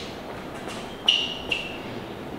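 Two short high-pitched squeaks, the first starting sharply about a second in and the second, fainter, half a second later, over a faint steady room noise.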